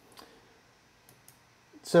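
Three faint, short clicks of a computer mouse: one near the start and two close together a little past the middle. A man's voice begins near the end.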